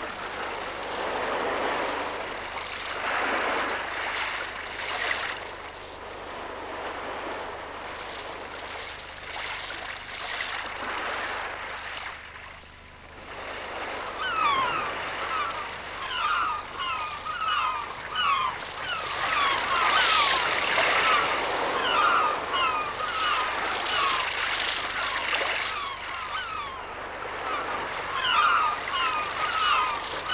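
Sea surf washing, and from about halfway in a crowd of seabirds joins it with many short, rapid calls over the waves.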